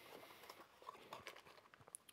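Near silence, with a few faint ticks and rustles of a small cardboard box being opened and handled.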